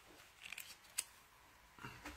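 Faint handling sounds of a small plastic dash cam and its cable being picked up off a table: a light rustle, then a single sharp click about a second in.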